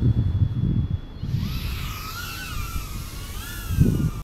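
Wind rumbling on the microphone; about a second in, the motors of a small ducted FPV quadcopter (BetaFPV Pavo 20) spin up with a whine that wavers up and down with the throttle.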